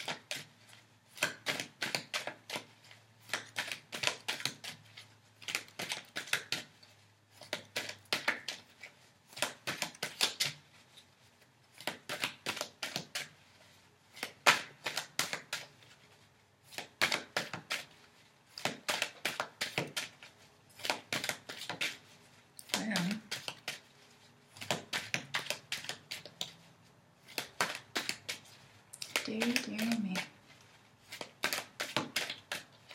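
A deck of tarot cards being shuffled by hand: the cards slap and flutter against each other in runs of quick clicks, repeating about every two seconds with short pauses between runs.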